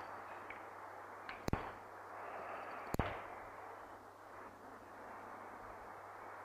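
Quiet classroom room tone, a faint steady hiss with a low hum, broken by three sharp clicks about a second and a half apart.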